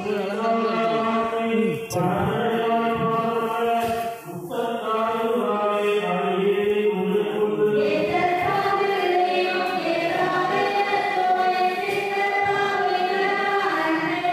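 Devotional chant sung by several voices with music, on long held notes, with a brief break about four seconds in.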